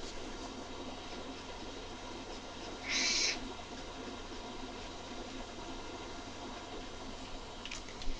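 Alcohol marker tip being drawn across paper, faint, with one louder, scratchy hiss of a stroke about three seconds in, over a steady faint hum.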